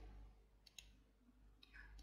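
Near silence, with a few faint clicks in the middle and near the end.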